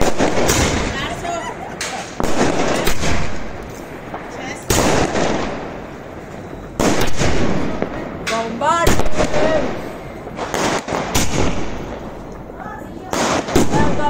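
Fireworks going off: a string of sharp bangs from shells bursting in the air, coming in clusters at irregular intervals, with a loud group at the start, another about five seconds in, a dense run around seven to nine seconds and more near the end.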